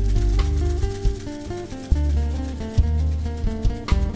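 Rock band playing an instrumental passage: sustained bass notes under a stepping guitar melody, with drum and percussion hits.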